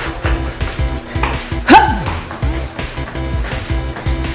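Background workout music with a steady beat, and a single short spoken cue about halfway through.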